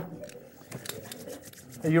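Faint rustling and small clicks of paper and craft supplies being handled in a box.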